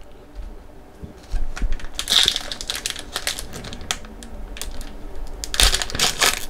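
Foil wrapper of a Skybox Metal Universe hockey card pack crinkling and tearing as it is worked open by hand. Quick crackles start about a second in and are loudest about two seconds in and near the end. The wrapper is hard to tear.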